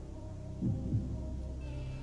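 Quiet background music bed of low, sustained tones with a steady throb in the bass, and a brief low vocal sound a little past halfway.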